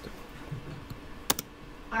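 Laptop keyboard keys clicking over quiet room noise, with one sharp double click about a second and a half in.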